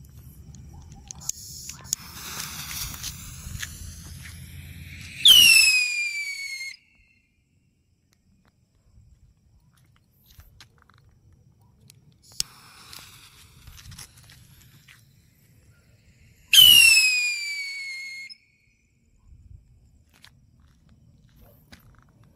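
Two Dragon whistling rockets launched one after the other. Each fuse fizzes for a few seconds, then the rocket gives a loud, piercing whistle that falls in pitch and lasts about a second and a half, about five seconds in and again about seventeen seconds in.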